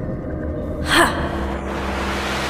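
Dark, ominous soundtrack with a low steady drone. About a second in comes one short, sharp breathy burst like a gasp, and after it a steady hiss continues under the music.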